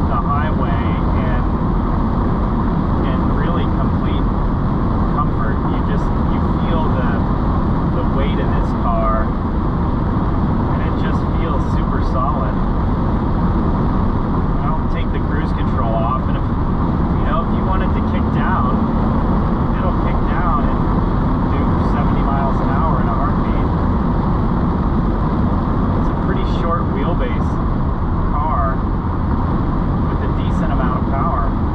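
Steady cabin noise of a 1988 Mercedes-Benz 560SL cruising: tyre, road and wind noise over the low rumble of its V8.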